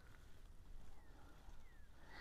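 Near silence: a faint low rumble of wind on the microphone, with two faint, short falling chirps about a second in and again near the end.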